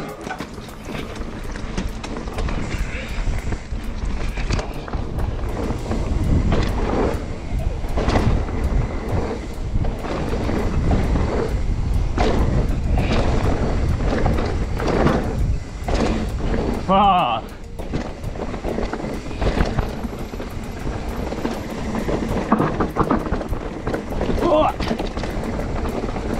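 Mountain bike ridden fast down a dry dirt singletrack, heard from a camera on the rider: a steady rumble of tyres and wind on the microphone, with a constant clatter of chain, frame and suspension knocking over roots and bumps. A short shout from a rider comes about 17 seconds in.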